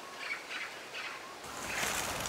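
Faint outdoor field ambience with a few soft, short bird chirps. About a second and a half in it gives way to a louder, steady outdoor hiss.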